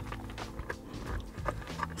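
Faint clicks and knocks of plastic centre-console trim being handled and pressed back into place, over a low steady hum.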